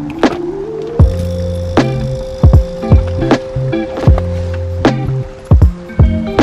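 Background music with a steady beat: deep kick drums and a bass line. It opens with a short rising run of notes in the first second.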